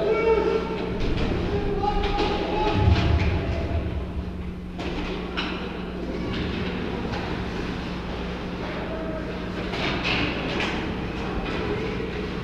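Indoor ice-rink arena ambience during a hockey game: a steady hum and rumble with distant voices calling out in the first couple of seconds, and a few faint knocks later on from play at the far end of the ice.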